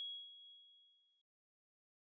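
The fading tail of a single bright, bell-like electronic chime, ringing on one high clear tone and dying away over about a second.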